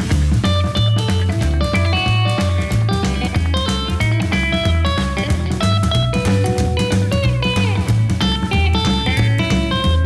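Gretsch hollow-body electric guitar fingerpicked in a swung 12-bar blues in A. A steady bass pulse runs under chord inversions and single notes played higher up the neck.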